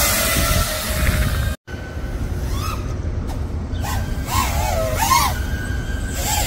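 FPV quadcopter flying close by: buzzing propellers whose pitch wavers up and down with the throttle. The sound cuts out completely for an instant about a second and a half in.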